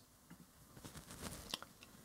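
Very quiet room tone with a few faint, brief clicks.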